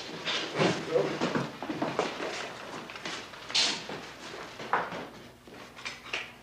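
Indistinct talking mixed with scattered knocks and clatter of equipment being handled, with a short hiss about halfway through.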